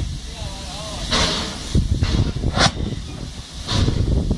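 Finnish Hr1 steam locomotive hissing steam in separate bursts: a longer one about a second in, then two short sharp ones, over a low rumble.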